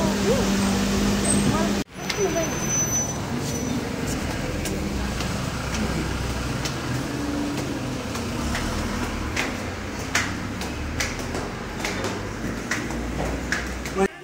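Steady engine hum inside a car, cut off abruptly after about two seconds. Then a noisy, rumbling background with a run of sharp, uneven taps in the second half: footsteps climbing a stairway.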